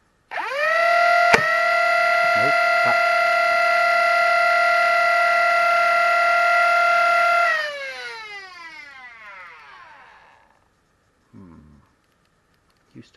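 Motors of a 3D-printed fully automatic Nerf blaster (Lepus Mk1) spinning up to a steady high whine, with one sharp snap of a dart being fired about a second in. The motors keep running for about seven seconds, then wind down with a smoothly falling pitch.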